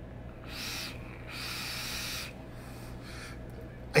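A person drawing on a vape through a rebuildable dripping atomizer on a box mod: a short airy draw, then a longer one of about a second, with the hiss of air pulled through the atomizer.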